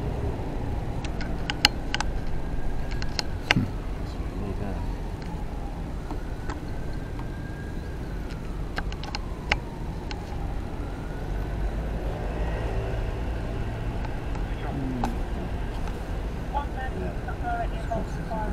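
Street background noise: a steady low rumble of road traffic, with a few faint passing-vehicle tones and scattered small clicks.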